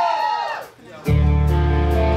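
Heavy metal band starting its set: a wavering, gliding pitched sound fades out, and about a second in distorted electric guitars and bass come in together on a loud sustained chord, with steady cymbal strokes.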